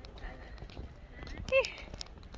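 Scattered, irregular clicks of steps on hard pavement, with a short voiced exclamation about one and a half seconds in.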